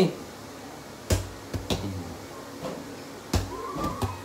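Two sharp knocks about two seconds apart, the first a little over a second in, with a few fainter taps between them, and a brief voice sound near the end.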